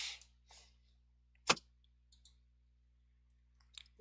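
Computer mouse clicks. One sharp click comes about one and a half seconds in, followed by a couple of fainter clicks and another pair near the end.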